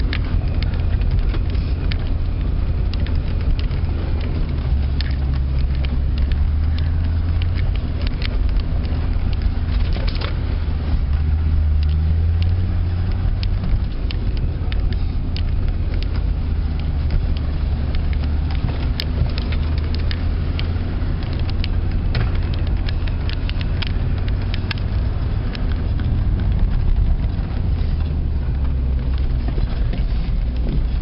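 Off-road 4x4 driving over a snowy woodland track, heard from inside the cab: a steady low engine drone with frequent short clicks and rattles throughout.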